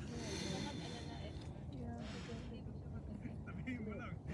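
Voices of a small group talking quietly, with laughter about half a second in, over a steady low rumble.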